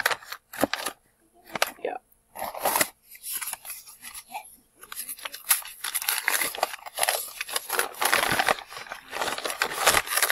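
Newspaper rustling, crinkling and tearing as it is pulled off small bottles of oil. It comes in short bursts over the first few seconds, then as an almost unbroken stretch of crackling from about five seconds in.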